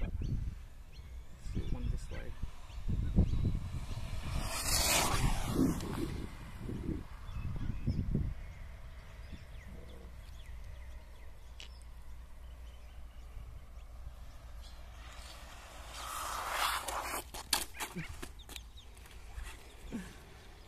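A hobby-grade RC buggy with a high-kv brushless motor at full speed: its high-pitched rush swells and fades about five seconds in as it runs down the road. A smaller swell comes near the end as it returns, followed by a few clicks. Wind buffets the microphone in the first half.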